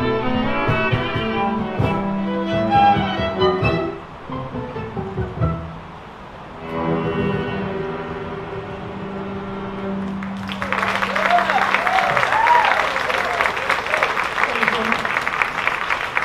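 String quartet playing a quick passage, then holding a long final chord that ends about ten seconds in. Audience applause follows.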